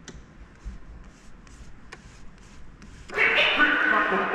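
Faint handling noise and soft clicks from hands on a vinyl record on a Technics SL-1200 turntable. About three seconds in, loud music played from the turntables starts suddenly.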